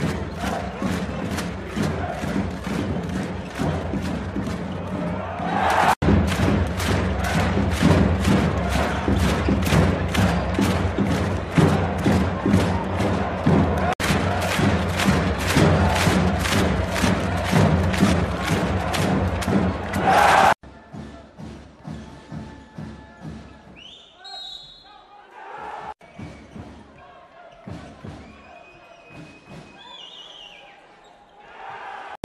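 Loud basketball arena din with a steady beat of about two a second, crowd chanting over drums or music. About twenty seconds in it drops away to quieter game sound: ball bounces and thuds on the court.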